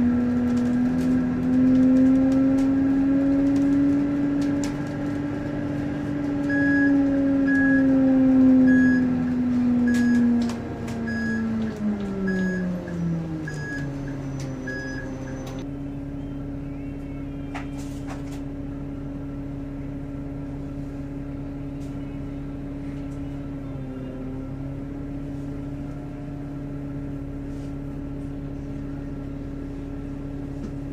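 Inside a GO Transit bus: engine and drivetrain hum with a strong steady whine that rises slightly, then drops in pitch as the bus slows, and settles into a lower, quieter idle hum. A short high beep repeats about one and a half times a second through the middle of the stretch, then stops.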